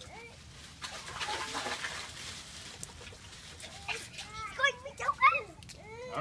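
Ice and water tipped from a plastic bag into a plastic tub, a rattling, splashing rush lasting about a second. A few short, high-pitched vocal cries follow in the second half, the loudest about five seconds in.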